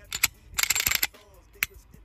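Glock 19 pistol with a Leo Precision Oden 19 aftermarket slide being racked by hand: sharp clicks, a short metallic rasp as the slide runs back and forward, and another sharp click.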